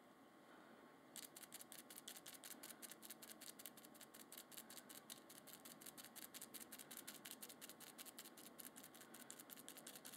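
A stiff brush rapidly dabbing glue into the spine of a clamped book block, heard as a faint, quick run of soft taps, about seven a second, that starts about a second in.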